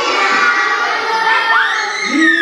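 A roomful of young children shouting and calling out at once, many high voices overlapping, some sliding up and down in pitch.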